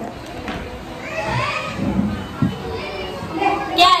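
Several voices of children and adults in a room, with no clear words, and a high voice sliding upward in pitch about a second in. A louder voice starts just before the end.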